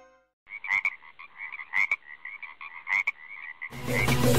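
A frog croaking in a fast, bubbling pulse, thin-sounding, with three sharper, louder croaks about a second apart. Music comes in loudly just before the end.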